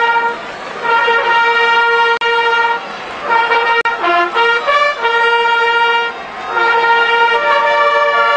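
Trumpets playing a fanfare: long held notes broken by short pauses, with a quicker run of changing notes in the middle.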